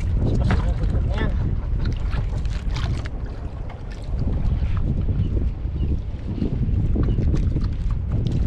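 Wind buffeting the microphone on a small boat at sea, a steady low rumble, with a few short handling clicks in the first few seconds.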